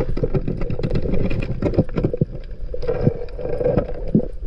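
Underwater noise picked up by a diving camera: a steady low rumble of moving water with many irregular knocks and clicks, as the diver swims with a red-spotted grouper (kijihata) struck on the end of his spear.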